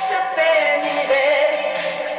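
A woman singing a pop song live into a handheld microphone over band accompaniment, her voice drawing out long notes that waver in pitch.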